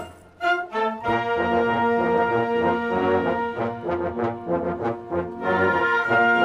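A wind band of flutes, clarinets, saxophones and brass playing. The music breaks off for a moment at the start, then comes back in with held chords over a pulsing bass line, with light percussion strokes about halfway through.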